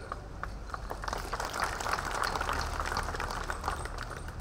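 Audience applauding, growing fuller about a second in and carrying on steadily.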